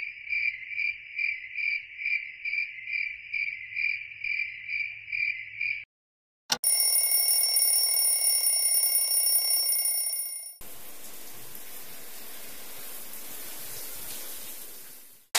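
A high chirping tone pulses about three times a second for about six seconds. After a click comes a steady electronic ringing from the cartoon alarm clock, which lasts about four seconds and then gives way to a steady hiss.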